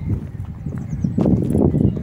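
Wind buffeting a handheld phone's microphone in an open field, a loud, irregular low rumble, mixed with footsteps of someone walking.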